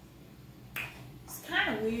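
A short, sharp click about three-quarters of a second in, then a woman says "Weird" in a drawn-out, gliding voice near the end, the loudest sound.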